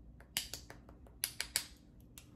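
About six sharp clicks and taps in two quick clusters, the sound of small makeup items being handled, such as a cap or case being opened or set down.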